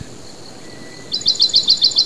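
A songbird singing: after a quieter pause, a rapid run of short, sharp, high chirps at about eight a second begins about a second in.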